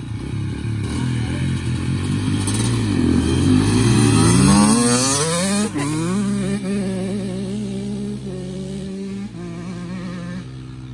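Two small dirt bikes accelerating away together, their engines climbing in pitch and loudest about halfway through, then running at a steadier pitch and fading as they ride off.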